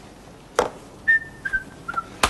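A sharp knock, then a short whistle of three held notes, each a little lower than the last.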